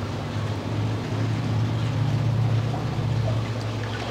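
Steady low hum with water running and trickling: aquarium circulation pumps moving water through a reef tank system.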